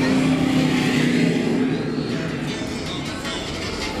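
Background music mixed with a car engine sound that fades away about two seconds in.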